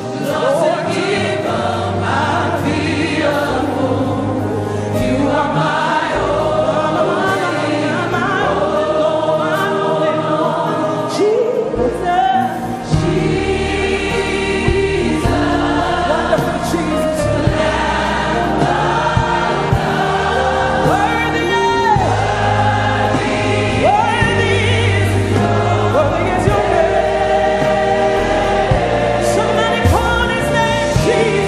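African gospel worship song sung by a choir over instrumental backing. A fuller bass line comes in a little before halfway through.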